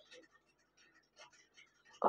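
Near silence, with a few faint rustles of saree fabric as the pleats are tucked in at the waist.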